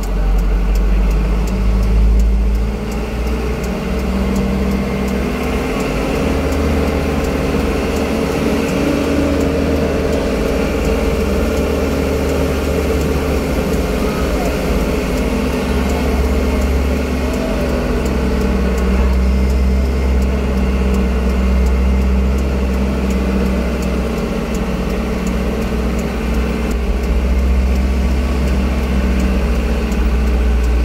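A motor vehicle's engine running steadily while driving along a road, a continuous low drone with road noise.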